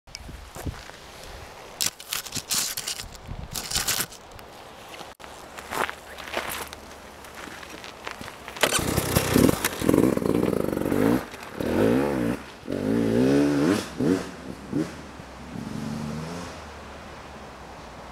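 A Beta 300RR two-stroke enduro motorcycle rides past close by, its engine revving up and down in several bursts of throttle between about 9 and 14 seconds in, then fading away. A few knocks and scrapes come in the first few seconds.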